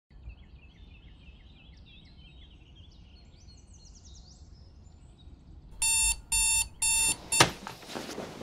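Faint bird chirping, then a digital alarm clock beeping three times, loud and about half a second apart. A single thump follows near the end.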